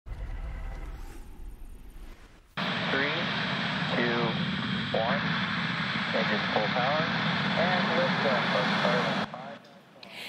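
A short low news-opener sting, then from about two and a half seconds a SpaceX Falcon 9 launch heard through the launch webcast: a steady roar of the rocket's engines at ignition and liftoff, with a commentator's voice over it, cutting off suddenly near the end.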